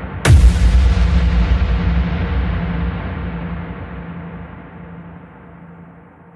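A deep cinematic boom sound effect: one sharp hit about a quarter second in, then a low rumble that fades slowly over several seconds, over a steady low dark drone, as a horror-style sting.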